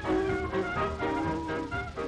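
1930s British dance band playing swing-style music, with brass and reeds over a steady beat, from the optical soundtrack of a 1935 sound film.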